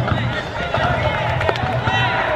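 A university cheering section in the stadium stands: music with several voices over it, running steadily.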